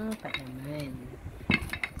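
Wooden rolling pin knocking against the tray while rolling out dough: one sharp clack about one and a half seconds in, then a few lighter clicks, under a woman's talk.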